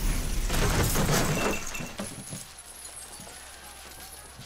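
Glass and debris shattering and clattering down after a blast. It is heavy for about the first two seconds, then dies down to a quieter scatter.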